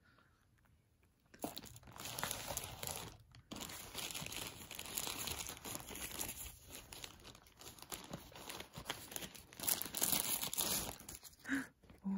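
A plastic postal mailer bag being torn open and rustled, a dense crinkling and tearing that starts about a second and a half in and runs in uneven bursts until shortly before the end.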